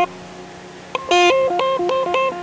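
Electric guitar: a quiet pause with a faint low hum, then about a second in a quick run of single picked notes, each a few tenths of a second long, stepping up and down in pitch.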